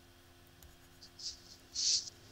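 Stylus scratching on a pen-tablet surface as a word is handwritten: two short, hissy strokes in the second half, the later one louder.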